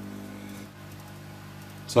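Hot-air rework gun running: a steady low hum with a faint airflow hiss. It is heating pre-tinned pads on a heat-sunk board to melt the solder.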